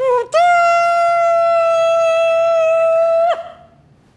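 A horn blown as a summons: a brief opening note, then one long, steady, loud blast of about three seconds that bends up slightly as it cuts off.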